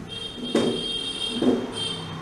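Dry-erase marker squeaking on a whiteboard as digits are written: a high, steady squeal lasting about a second, then a short one again near the end, with two soft knocks of the marker tip in between.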